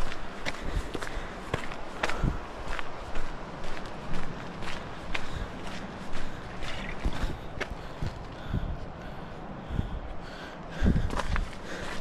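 Footsteps crunching on a gravelly, rocky dirt trail, about two steps a second, heard close from a chest-mounted camera, with a louder low thump near the end.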